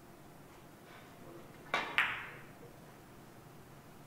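A three-cushion billiards shot: the cue tip clicks on the cue ball, and about a quarter second later the cue ball clacks sharply against an object ball with a short ring.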